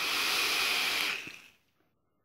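A long drag on an iStick 100 box mod with a rebuildable dripping atomizer, firing a single Clapton coil at 0.28 ohms and 40 watts: a steady hiss of air drawn through the atomizer that stops about a second and a half in.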